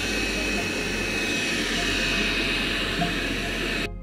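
Dreame L20 Ultra robot vacuum running, its suction motor making a steady, even noise with a thin high whine. The sound is a little noisy and cuts off suddenly just before the end.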